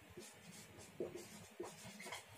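Faint scratching of a marker pen writing on a whiteboard, in a few short strokes.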